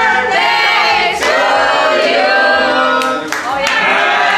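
A group of people singing together in chorus, a birthday song.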